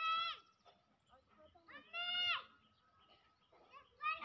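Two short, high-pitched vocal calls, one at the start and one about two seconds in, each falling in pitch at its end, with a faint steady high tone underneath.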